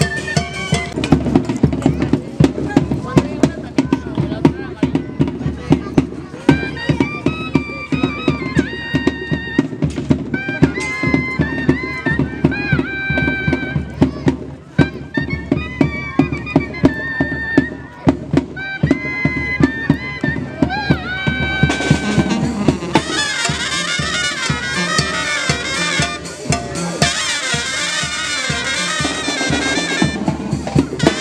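Traditional fiesta dance music: a reedy wind instrument plays a melody with held notes over a fast, steady drum beat. About 22 seconds in, a brighter, fuller band sound comes in.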